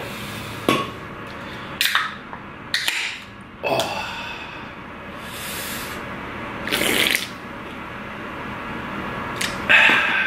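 An aluminium can of Monster Energy drink cracked open with a few sharp clicks, then drunk from in gulps, with an exhaled 'ah' near the end.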